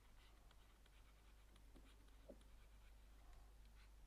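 Near silence with faint scratching and light taps of a pen stylus writing on a tablet, over a low steady hum.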